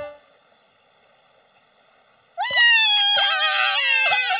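About two seconds of near silence, then two cartoon bunnies let out a loud, high-pitched shriek, their attempt at an intimidating yell, its pitch sliding slightly down.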